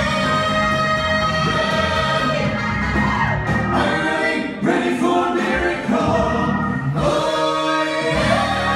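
Male vocal quartet singing in close harmony over backing music, holding long notes that move to a new chord every second or so.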